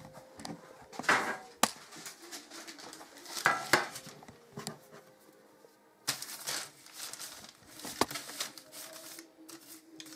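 Hands rolling and patting a piece of bread dough into a loaf shape on a floured sheet: soft irregular rustling and pressing, with a couple of sharp knocks.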